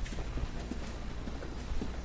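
Footsteps on a hard hallway floor: a few light, irregular knocks over a steady low rumble.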